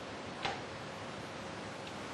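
Computer mouse clicks: a sharp click about half a second in and a faint one near the end, over steady room hiss.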